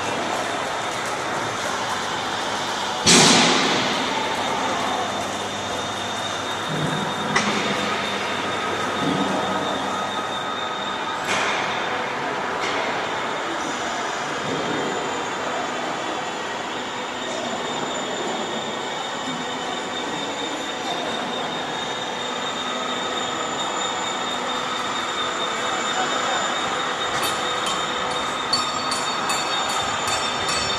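Metal fabrication plant noise: a steady mechanical din with high, lasting metallic ringing tones, broken by a loud metal clang that rings away about three seconds in and a few smaller knocks over the following ten seconds, with a run of quick ticks near the end.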